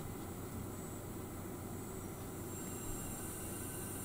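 Gas hissing steadily from the nozzle of an unlit propane lampworking burner fed from a cassette gas canister: the sign that gas is flowing through the hose and the burner is ready to light.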